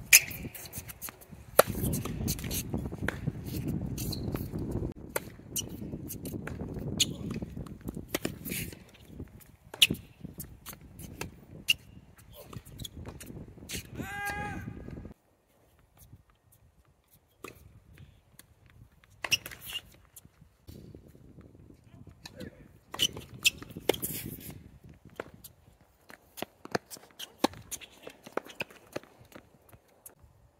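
Tennis rallies on an outdoor hard court: sharp pops of racket strings striking the ball and the ball bouncing, trading back and forth between two players. Under the first half there is a low steady rumble that cuts off suddenly about halfway through, just after a brief high-pitched sound.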